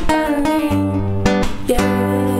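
Acoustic guitar fingerpicked: a melody of plucked notes over ringing bass notes, in an instrumental passage of the song.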